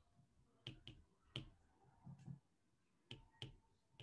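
Faint, separate clicks of a stylus tapping on a tablet screen while writing, about five taps in all.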